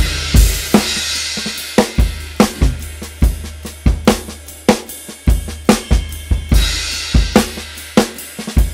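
A recorded song's chorus played back on loop from a DAW, led by a drum kit: kick and snare hits in a steady beat with hi-hat and crashing cymbals, over a sustained low bass.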